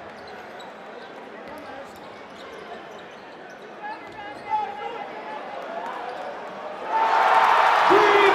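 A basketball bouncing on a hardwood court under a low arena crowd murmur, with voices in the hall; about seven seconds in the crowd noise and shouting rise sharply.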